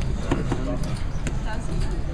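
Several people talking at once, with a few short, sharp clicks.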